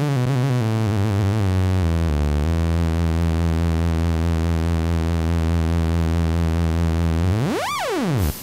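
Electronic synth-funk music: a wobbling synthesizer line settles into one long held low note. Near the end there is a fast pitch sweep up and back down.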